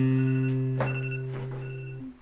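Background music: one sustained low chord that slowly fades, with faint high tones coming and going above it.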